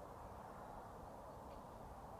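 Faint, steady rush of a flowing river.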